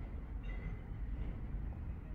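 Low, steady background rumble with no distinct event; a faint brief high tone sounds about half a second in.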